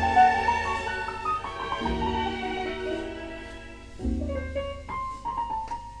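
Classical music with piano, played back from a record through a single-ended tube amplifier and wooden horn loudspeakers and heard in the room.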